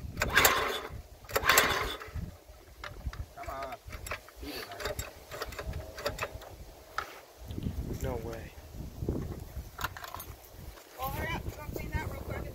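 Mechanical clicking and rattling of hand tools working on the small engine of a water-swamped mud mower, with a few louder rushing bursts in the first two seconds.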